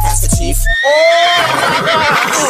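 A horse whinny dropped into a hip-hop beat. The beat plays at first; about a second in, the bass cuts out and a long, quavering, falling whinny carries on to the end.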